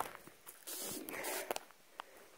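Footsteps on dry grass and dirt: a soft scuffing for about a second in the middle, with a few faint clicks.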